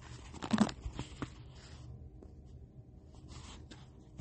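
Faint rustling with a few short clicks in a small room, over a low steady hum.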